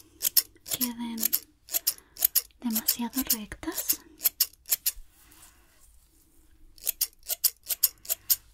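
Hair-thinning scissors snipping through the ends of a lock of hair close to the microphone, in quick runs of crisp snips with a pause of a couple of seconds past the middle.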